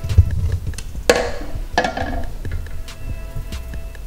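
A metal spoon knocking and scraping against a metal bundt pan as stuck apple pieces are scooped out onto the cake, with the loudest clink, which rings briefly, about a second in and another shortly after. Background music with a steady bass runs underneath.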